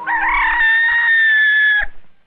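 A rooster crowing, one long call of almost two seconds that holds a nearly level pitch and then cuts off abruptly: a dawn wake-up signal.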